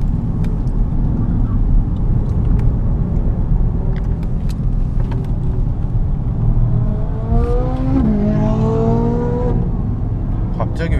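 Porsche Cayenne Turbo's twin-turbo V8 heard from inside the cabin under a steady low rumble of engine and road noise, with occasional sharp clicks. From about seven seconds in the engine note rises as it accelerates, dips about a second later as if with a gear change, then climbs again.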